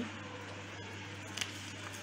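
A sheet of origami paper being folded in half and pressed flat: faint rustling, with a brief light crinkle about one and a half seconds in.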